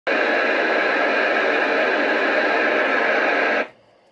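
Steady hiss of an amateur FM transceiver receiving the ISS's ARISS repeater downlink: open-squelch receiver noise from a weak signal with the satellite only about 3° above the horizon. It cuts off abruptly about three and a half seconds in.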